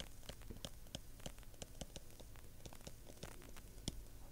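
A stylus tip tapping and scratching on a tablet screen during handwriting: a faint, irregular run of small ticks.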